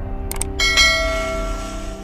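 A sharp click, then a bright bell ding that rings out and fades over about a second: the click-and-bell sound effect of an animated subscribe and notification-bell overlay, over faint low music.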